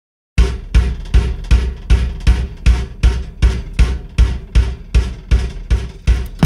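Steady drum beat: a deep bass-drum hit about two and a half times a second, each with a short decaying tail, starting about half a second in after a moment of silence.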